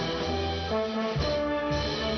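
A wind band of clarinets and saxophones playing a piece, with held chords over a bass line that moves note by note.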